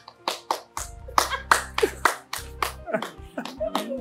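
Hands clapping in quick, uneven claps over background music.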